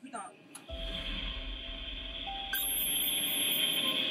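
Steady electronic hiss and hum from the Shinkai submersible's equipment, with a low rumble underneath that stops about three seconds in. About two and a half seconds in, a very high, evenly pulsing electronic tone joins.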